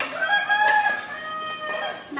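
A rooster crowing once, one long call of nearly two seconds.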